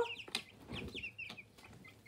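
A group of young chicks peeping softly: a scatter of short, high chirps, each sliding down in pitch, with a couple of light ticks near the start.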